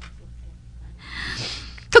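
A long, breathy breath from the narrating voice, lasting just under a second and starting about a second in, over a faint low hum.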